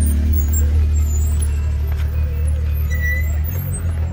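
Side-by-side UTV engine running at low revs in a steady low drone while crawling over rocks, easing slightly after about three and a half seconds.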